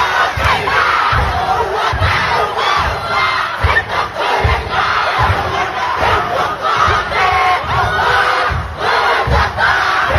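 A primary-school kapa haka group performing a haka: many children's voices shouting in unison, with low thuds about twice a second.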